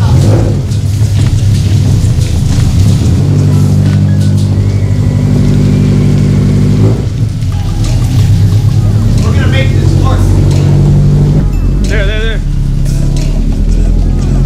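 Scion FR-S's 2.0-litre flat-four engine running at low revs as the car creeps back and forth at walking pace. Two brief wavering high squeals come in, one near ten seconds in and one near twelve.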